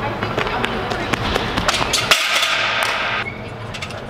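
Echoing indoor ambience of a track facility: background voices and many sharp clacks and knocks. A hiss about two seconds in stops abruptly about a second later.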